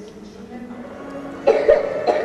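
A person coughing: a short loud burst with two peaks about one and a half seconds in, after a quieter stretch.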